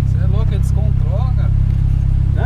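Tuned turbocharged Volkswagen Golf engine (about 300 hp) running at a steady low drone, heard from inside the cabin while driving slowly, with no rise in pitch.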